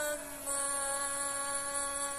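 A singer holding one long, steady sung note.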